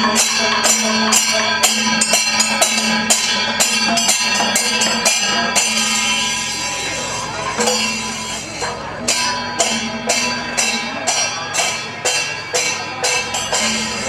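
Procession music: percussion with bright, cymbal- or tambourine-like strikes in a steady rhythm of about two to three a second, over a sustained drone note. The beat thins out briefly in the middle and then picks up again.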